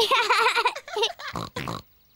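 Cartoon piglet voices laughing together, followed by two short pig snorts about a second and a half in.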